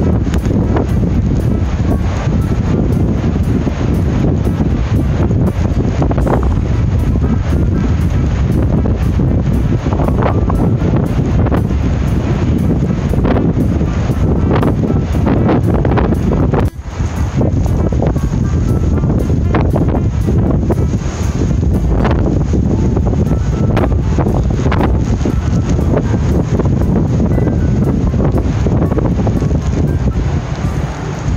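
Strong wind blowing hard across the microphone, a dense low rumble that briefly drops out about 17 seconds in, with the surf of a rough winter sea beneath it.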